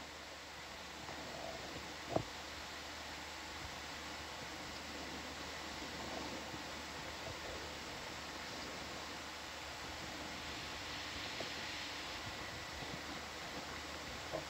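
Steady faint hiss of background noise, with one short sharp click about two seconds in.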